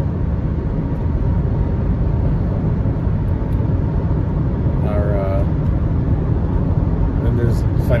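Steady road and engine noise inside a car's cabin while driving at highway speed, with a brief spoken sound about five seconds in.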